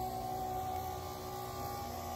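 Steady electric motor hum from winery equipment running, holding several fixed pitches without change.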